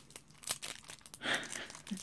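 Light crinkling and a few small clicks as hands handle a small needle case.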